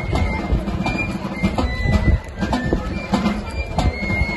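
Live Basque folk music played for a sokadantza: drum beats under a high, piping melody line, with crowd noise.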